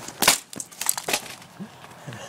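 Battered, already broken laptop smashed down hard: one loud crunch of cracking plastic, followed by a few smaller cracks and clatters as pieces break off.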